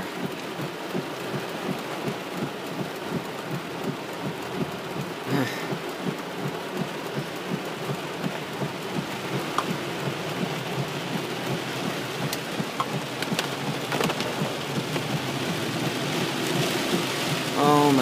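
Heavy rain drumming steadily on a car's roof and windshield, heard from inside the cabin, growing a little louder toward the end.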